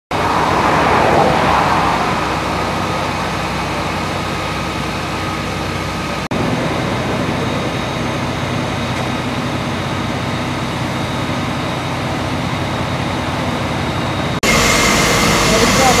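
Fire engine running at a fire scene, its engine and pump giving a steady low hum. The sound changes abruptly about six seconds in and again near the end, where a louder hiss joins.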